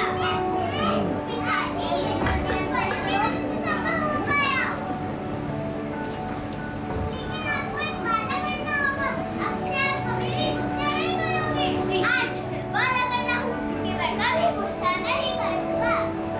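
Many children's high voices chattering and calling out at once, over steady background music with long held notes.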